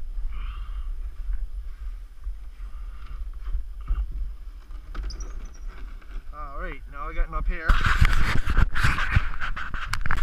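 Wind buffeting the microphone. Near the end, a loud stretch of wooden lumber scraping and knocking against the roof framing as it is worked into place.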